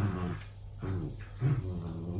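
Two small dogs play-fighting, with several short, low growls from one of them.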